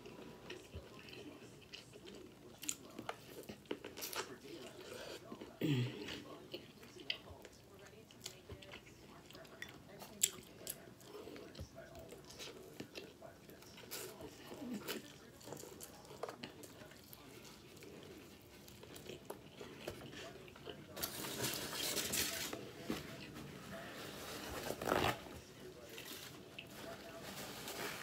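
Close-miked biting and chewing of boiled corn on the cob: crunching kernels, wet mouth clicks and lip smacks, with a couple of short hums of enjoyment. A few seconds of louder rustling come about three-quarters of the way through.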